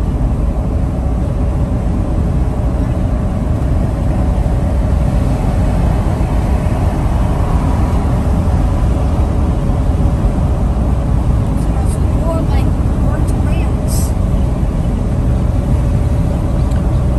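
Steady in-cabin drone of a Mercedes Sprinter van's diesel engine and road noise at highway speed. The engine is running in limp mode without turbo boost.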